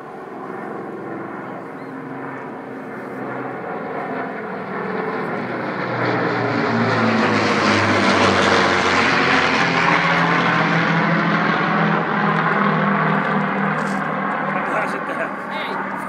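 Avro Lancaster bomber's four Rolls-Royce Merlin piston engines as it flies low overhead. The sound grows louder, is loudest from about six to twelve seconds in with the engine pitch dropping as it passes, then fades a little.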